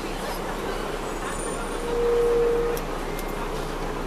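Steady engine drone and road noise inside a 2002 MCI D4000 coach, heard from the rear seats near its Detroit Diesel Series 60 diesel engine. A single horn toot, one steady tone lasting about a second, sounds near the middle and is the loudest thing heard.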